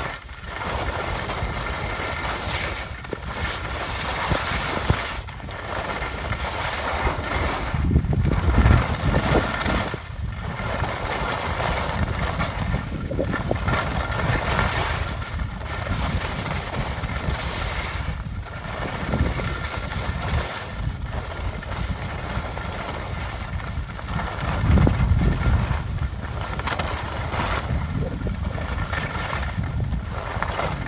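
Skis hissing and scraping over packed snow on a downhill run, the sound swelling and dipping every two to three seconds, with wind buffeting the microphone in two louder low rumbles, about eight seconds in and again near twenty-five seconds.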